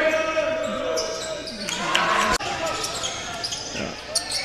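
Live college basketball game sound in a gym: the ball bouncing on the hardwood court and sneakers squeaking, with voices in the background.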